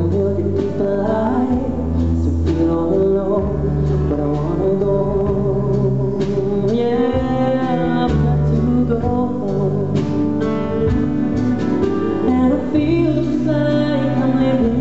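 Live male vocal singing a ballad into a microphone, accompanied by a strummed acoustic guitar, with long held notes and low bass notes underneath.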